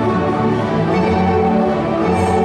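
A Kazakh folk-instrument orchestra playing, with dombras plucked and strummed, in a full, steady texture of many sustained notes.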